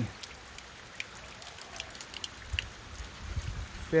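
Scattered light drips of water ticking irregularly over a faint outdoor hiss, with a low rumble coming in about halfway through.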